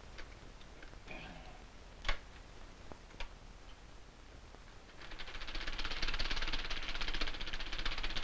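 A few sharp clicks as a film projector is handled. About five seconds in, the projector starts running with a fast, even clatter.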